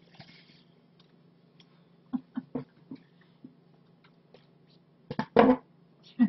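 Steady low hum in a quiet room, with a few soft knocks about two seconds in, then a loud burst of thumps and clatter near the end as things are handled or bumped.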